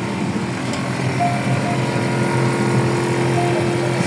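A steady mechanical hum: a low drone with a fainter, higher steady tone above it over even background noise, from a running motor or machine.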